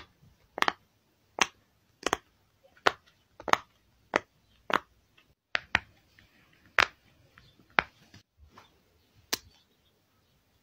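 Silicone push-pop fidget toys having their bubbles pressed through one at a time, each giving a sharp little pop. About a dozen pops come at an uneven pace of roughly one every half-second to second.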